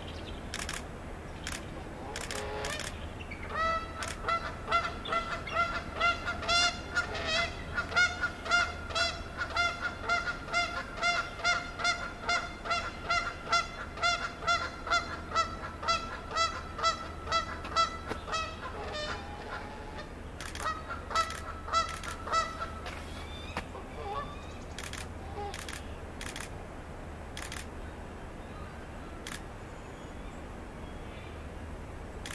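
A bird calling in a long run of evenly repeated pitched notes, about two a second, for some fifteen seconds. After a short pause comes a shorter run of the same calls. A few sharp clicks come near the start and near the end.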